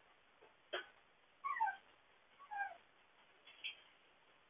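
Young puppies whimpering: two short, falling whines and a brief squeak near the end, heard faintly through a security camera's microphone. A single sharp click comes just before the first whine.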